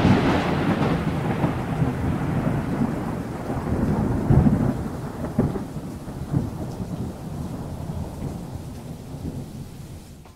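Thunder rumbling after a crack, with a few swells about four and five seconds in, slowly dying away over steady rain.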